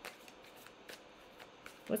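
A tarot deck being shuffled by hand, overhand: a few faint, soft papery flicks as packets of cards slide through her fingers.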